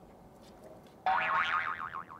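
A cartoon-style 'boing' sound effect about a second in: a tone that wobbles rapidly up and down in pitch, like a twanging spring.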